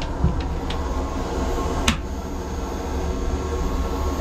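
Steady low machinery hum, with one sharp click about two seconds in as the console's access hatch is unlatched and opened.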